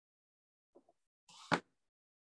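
Small craft pieces handled on a work table: a faint tap, then one sharp click about one and a half seconds in, with quiet between.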